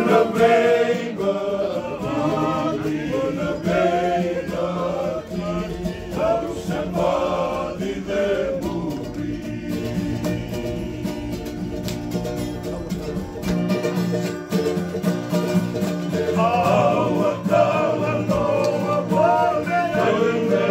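A group of men singing a Fijian-language song together, accompanied by a strummed acoustic guitar. The voices thin out in the middle over the strumming, then the full group singing comes back in near the end.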